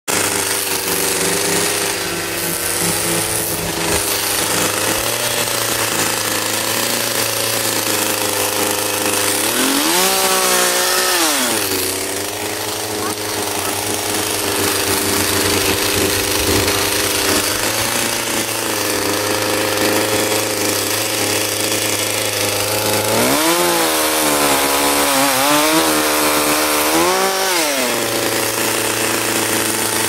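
Two-stroke chainsaw idling steadily, revved up briefly about ten seconds in, then revved again near the end for about four seconds with a wavering pitch before dropping back to idle.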